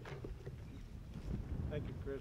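Low wind rumble on an outdoor microphone, with a faint voice near the end.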